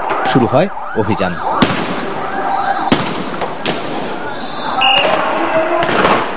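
Sharp bangs of police gunfire and sound grenades, about five in the first four seconds, over the noise of a street clash with voices. A steady high tone comes in near the end.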